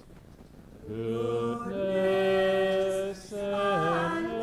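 Unaccompanied singing in long held notes that step from pitch to pitch, starting about a second in, with a short break about three seconds in and a slide down in pitch just before the end.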